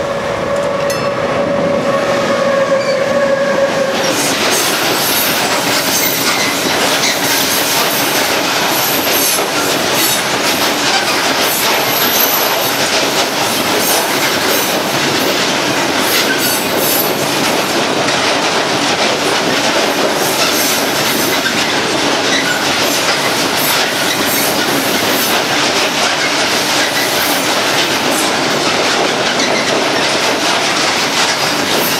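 Freight train of open hopper wagons passing close by at a level crossing: a loud, steady rumble and clatter of steel wheels on the rails, with high wheel squeals. A steady tone is heard for the first few seconds as the train comes up.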